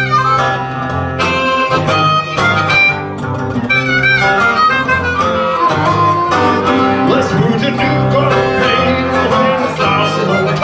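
Instrumental blues break on hollow-body guitar and harmonica played into a microphone: the guitar keeps up a strummed, picked accompaniment under long, held harmonica notes, some bent in pitch about seven seconds in.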